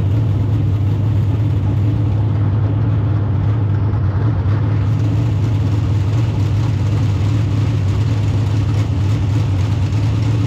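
Dirt late model race car's V8 engine idling steadily, heard from inside the cockpit, with an even, unchanging pitch.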